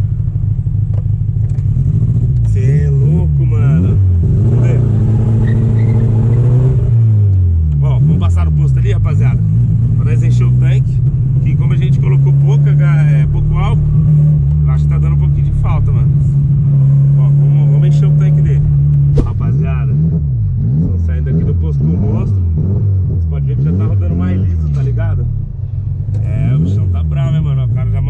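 Chevrolet Chevette's four-cylinder engine heard from inside the cabin, accelerating through the gears: the pitch climbs, drops at a gear change about seven seconds in, climbs again, holds steady at cruise for several seconds, then rises and falls with the throttle toward the end.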